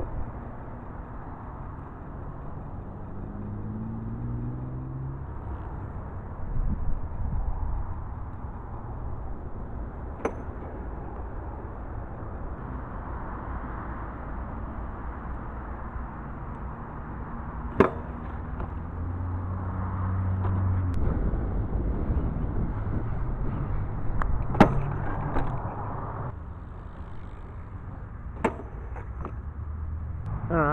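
A BMX bike riding on a concrete skate park, its tyres hissing over the ground, with a handful of sharp knocks as it hits the concrete and the steel rail. A road vehicle's engine passes in the background twice, rising and falling.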